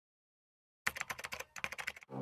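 Rapid keyboard typing clicks in two quick runs with a brief pause between, starting about a second in.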